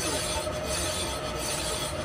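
Metal lathe turning a steel truck-trailer axle spindle while a hand file is held against the spinning shaft, giving a steady metal-on-metal rasping squeal.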